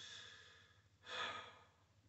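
A man sighing, two soft breaths in a row, in frustration just before he says "this sucks."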